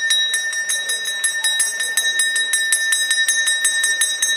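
A temple bell rung rapidly and continuously, about six strikes a second, each strike clanging on the same steady ringing tone.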